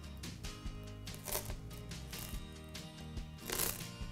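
Soft background music, with faint rustling and clicking of strung seed beads sliding along a thread as the strand is pulled up.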